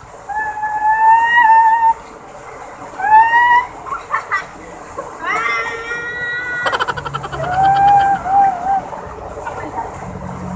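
High-pitched shrieks and yells from people splashing under a small waterfall, several long cries rising and falling, over the steady rush of falling water.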